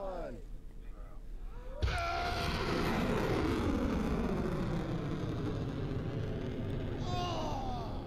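Rocket launch heard through the audio of a shared phone video: a sudden start about two seconds in, then a sustained rumble of rocket-motor noise with tones falling in pitch through it as the rocket climbs away.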